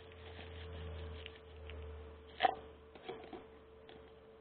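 Plastic cups being handled over a potted plant: faint crackling of soil and plastic, then one sharp knock a little past halfway and a few lighter clicks after it. A steady hum runs underneath.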